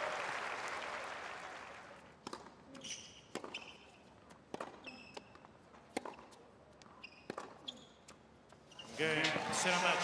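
Crowd applause dying away, then a tennis ball bounced on a hard court: a string of sharp, unevenly spaced bounces over a quiet stadium. Crowd noise swells again near the end.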